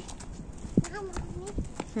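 Footsteps clicking on a paved street: several short, sharp steps. A voice gives a brief murmur about halfway.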